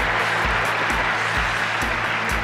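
Studio audience applauding over background music with a steady bass beat.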